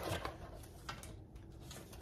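Faint handling of a cardboard box: soft rustling with a few light taps as the box flaps and the paper inside are moved.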